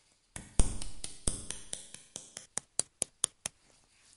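Hand claps: a dense, loud run of claps at first, then single sharp claps about five or six a second that stop about three and a half seconds in.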